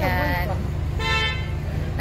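A car horn gives one short toot about a second in, over a steady low rumble.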